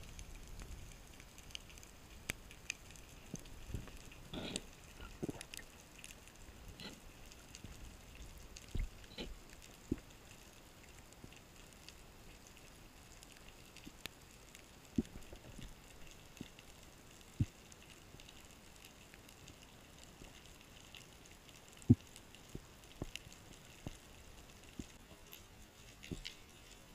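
Faint underwater ambience: a steady hiss with scattered crackling clicks and a few sharper single clicks, the loudest late on.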